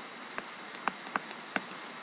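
Stylus clicking against a tablet screen while handwriting: four or five short, sharp ticks over a steady hiss.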